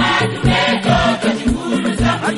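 Choir singing a gospel song over a steady low drum beat, about two beats a second.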